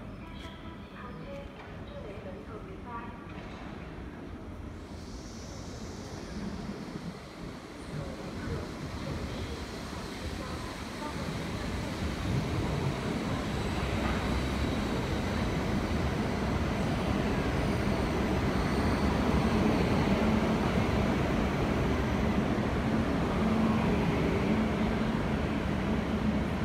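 Chinese high-speed electric multiple-unit train pulling into the station along the platform: the rumble of wheels and running gear grows louder from about halfway through and then holds steady with a low hum as the coaches glide past. Faint voices near the start.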